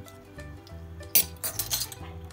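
Steel measuring spoons clinking, a quick run of sharp clinks a little over a second in, over background music with a steady bass line.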